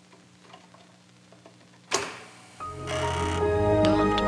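A 5.25-inch floppy disk being slid into a Commodore 1541 disk drive, with faint small clicks over a low steady hum, then one sharp click about two seconds in. Just after that, electronic music with sustained synth tones and bass comes in and is the loudest sound.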